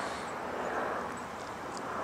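Steady outdoor background noise, an even hiss and low rumble with no distinct event.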